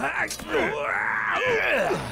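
A man's loud, drawn-out groaning and straining as he grapples, his voice bending up and down in pitch.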